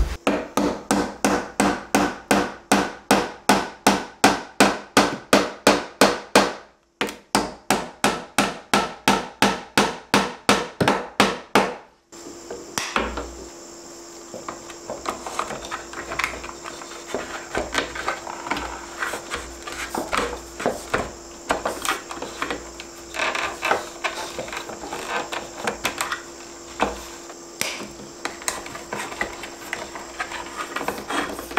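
A hammer striking, steady and even at about three blows a second, with a short pause about seven seconds in; the blows stop abruptly about twelve seconds in. After that come quieter small clicks and rubbing as a metal electrical box and cable are handled, over a faint steady hum.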